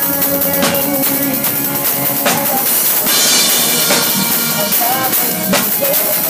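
A live band playing a rock-style worship song: drum kit with cymbal hits and an electric guitar, with sustained melodic lines over them.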